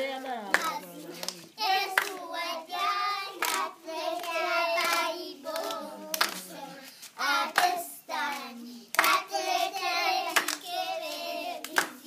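A group of young children singing a song in Luganda together, with hand claps through the singing.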